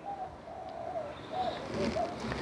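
Faint cooing of a bird in the background: soft wavering calls, a few in a row.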